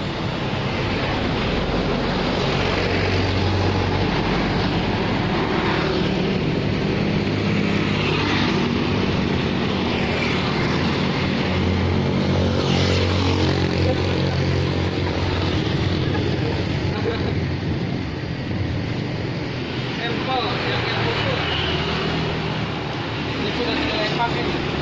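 Roadside traffic: motorbike engines running and passing, with a steady engine hum that is strongest from about six to sixteen seconds in.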